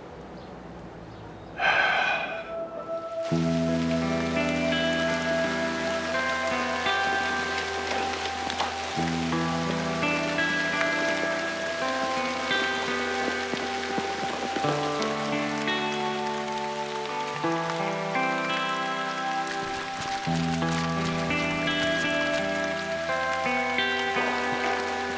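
Heavy rain falling, with a brief loud burst of sound about two seconds in. Slow background music then comes in under the rain, with held low chords and a simple melody.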